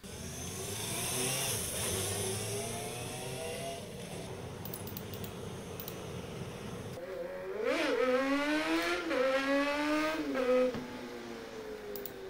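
Suzuki GSX-R400R four-cylinder 400cc engine heard through video playback. At first a bike runs past. From about seven seconds an onboard clip with a stubby exhaust starts: a quick blip of revs, then a loud, high-revving pull that drops off shortly before the end.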